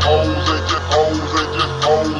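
Memphis rap instrumental beat: a steady deep bass, a short melodic riff repeating about once a second, and regular hi-hat ticks, with no rapping over it.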